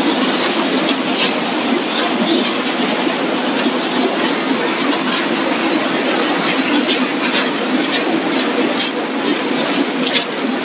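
Snack chip production line machinery running: conveyor belts and their drive motors make a steady, dense mechanical noise, with a few faint clicks.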